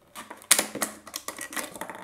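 Thin plastic water bottle crackling and clicking as it is handled and its screw cap twisted off, a quick run of sharp crackles loudest about half a second in.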